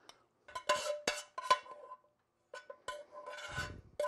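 Metal spoon clinking and scraping in a large skillet and against small glass Pyrex baking dishes as a thick filling is spooned out. A run of sharp clinks, some with a short ringing note, then a short pause and a longer scrape across the pan near the end.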